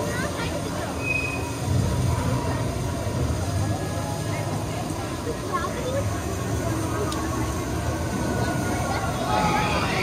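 Low, steady rumble of the Expedition Everest roller coaster train running on its track, under faint crowd chatter. Near the end a higher-pitched noise begins to build.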